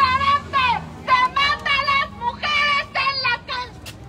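High-pitched women's voices chanting a protest slogan in short, rhythmic shouted phrases.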